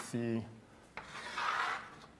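Chalk writing on a blackboard: a light tap about a second in, then a short scratchy stroke lasting under a second.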